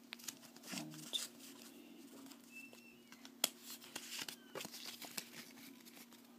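Faint rustling and small clicks of Pokémon trading cards being handled and shuffled just out of an opened booster pack, over a low steady hum.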